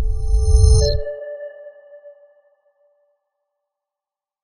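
Audio logo sting: a deep low swell with high steady tones over it, ending about a second in on a bright chime that rings and fades out over the next two seconds.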